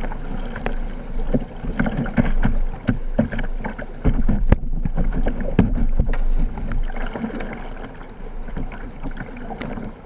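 Whitewater rapids rushing around a kayak, with irregular splashes and knocks from paddle strokes and water slapping against the boat.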